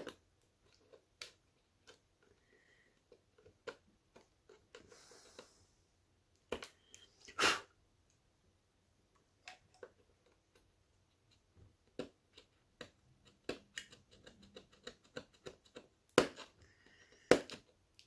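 Scattered small clicks and brief scrapes of a knife blade cutting and scraping away the plastic back of a motherboard's PCIe x1 slot, coming thicker toward the end. A single exhaled "whew" about seven seconds in is the loudest sound.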